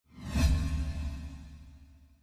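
A whoosh sound effect with a deep rumble underneath, swelling to a peak about half a second in and then fading away.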